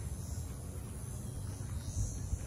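Steady outdoor background noise with a low rumble and no distinct event.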